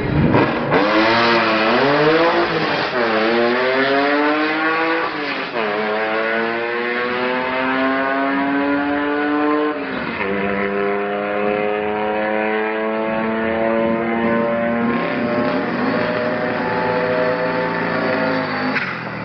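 VW bus launching from the drag-strip start line and accelerating hard under full throttle. The engine pitch climbs through each gear and drops sharply at the upshifts, about 3, 5½ and 10 seconds in. After the last shift it runs on nearly level and fades slightly near the end.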